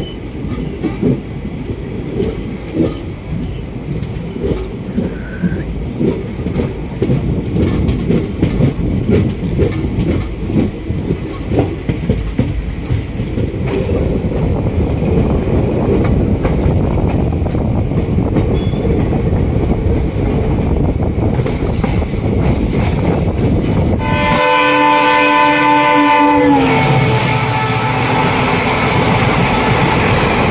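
Passenger train running on jointed track, heard from an open coach door: rumble and clickety-clack of the wheels over rail joints, slowly growing louder. About 24 seconds in, a train horn on the passing train sounds for about two seconds and drops in pitch as it goes by. The rush of that train's coaches passing close alongside follows.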